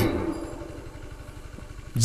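A short pause in a man's amplified speech, filled by a steady low background rumble; his last word fades out at the start.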